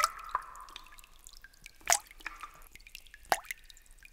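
Drops of liquid falling one at a time into a fountain's basin, each a sharp separate plop, a few seconds apart.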